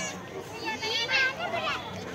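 Crowd chatter: many voices talking and calling over one another, with a louder, high-pitched voice about a second in.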